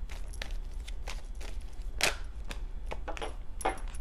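A deck of tarot cards being shuffled by hand: a quick run of card flicks and taps, with one louder snap about two seconds in, over a steady low hum.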